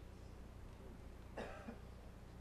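Quiet room with a low steady hum, and one short, faint cough about one and a half seconds in.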